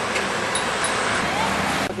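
Steady rushing outdoor background noise that starts at a hard cut and stops abruptly near the end.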